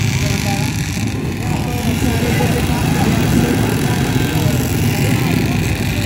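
Many motorcycle and scooter engines running together as riders idle and move along the street, a steady dense rumble with people's voices mixed in.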